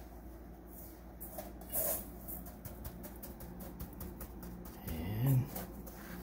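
Fingers pressing and patting panko breadcrumbs onto a grit cake in a bowl: a run of small crackling ticks of dry crumbs. About five seconds in, a brief wordless vocal sound from the cook is the loudest moment.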